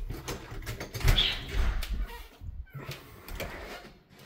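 An interior door to the garage being opened and walked through: scattered clicks and knocks, with a louder dull thump and rumble from about one to two seconds in, then quieter toward the end.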